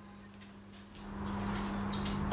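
Quiet handling sounds as rolled pancakes are lifted off plates: near silence at first, then about a second in a low rumble with a few faint clicks, over a steady low hum.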